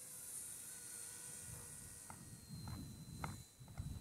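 Faint, steady whine of a radio-controlled Bell 206 model helicopter's motor and rotor in flight, with a low rumble on the microphone in the second half.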